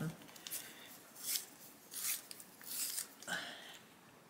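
Coloured pencil (Castle Arts Gold, Hooker's Green) being sharpened in a manual sharpener: four or five short scraping turns, each followed by a brief pause.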